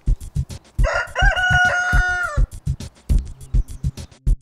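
A rooster crows once, about a second in: a single call that rises, holds and then drops away. It sits over background music with a steady beat.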